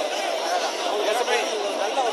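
Crowd chatter: many voices talking at once in a steady babble, with no single clear speaker.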